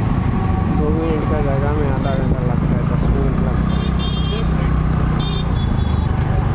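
Motor scooter engine running steadily under busy street traffic noise while riding, with voices in the street in the first couple of seconds. Two short high-pitched beeps sound about four and five seconds in.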